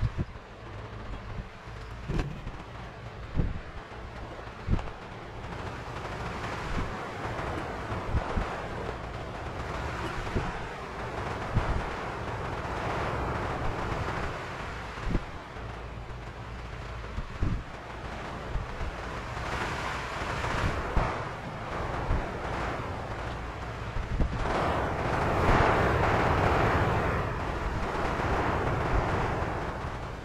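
Rustling and rubbing as a cloth smooths a vinyl sticker onto a Sintra board and its backing is peeled away, swelling louder in stretches, with scattered light knocks and a steady low hum underneath.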